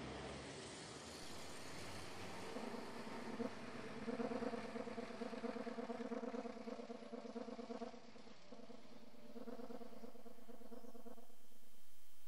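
A bus engine running as the bus drives past, a low drone with a fast even pulse that comes in a few seconds in and breaks off briefly about two-thirds of the way through, over a faint hiss.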